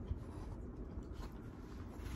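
Faint rubbing and rustling of a picture book being handled and moved, with a couple of light knocks, over a low room rumble.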